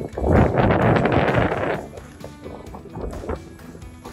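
Skis sliding and scraping over packed, tracked snow on a downhill run, a loud rushing scrape for the first couple of seconds, then quieter.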